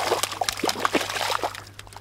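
Water splashing and sloshing at the surface of a stream in irregular bursts, over a steady low hum.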